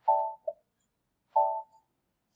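Electronic alert tone sounding twice, about a second and a half apart: short, pitched beeps, each with a brief second blip after the first.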